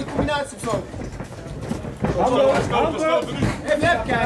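Men's voices shouting from ringside, coaching a fighter during the bout, with a quieter gap in the middle.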